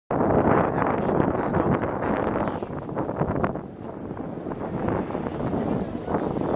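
Wind buffeting the camera microphone on an open beach: a rough, fluttering rumble, loudest in the first few seconds, easing a little past the middle and picking up again near the end.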